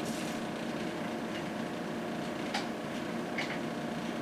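Steady hum and hiss of an oscilloscope's cooling fan running, with a couple of faint clicks past the middle.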